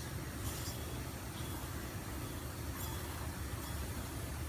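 Steady low hum of workshop background, with faint brief handling noises as the pump's aluminium impeller is unscrewed by hand from its shaft.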